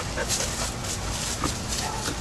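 Border Collie panting with her mouth open, in the overheated, disoriented state of a Border Collie Collapse episode.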